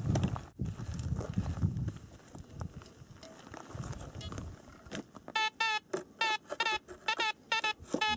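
Fisher Gold Bug metal detector giving a quick run of short, bending beeps, about three to four a second, as its coil is swept over the hole. It is signalling a deep metal target right under the coil. Before the beeps, soft scraping of gravelly soil with a hand tool.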